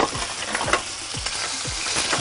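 Frozen peas and carrots, straight from the freezer, sizzling on a hot grill pan: a steady fry with a few faint pops.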